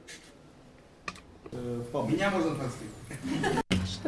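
Soft laughter and low voices away from the microphone, rising out of a quiet room about a second and a half in, after a couple of faint clicks.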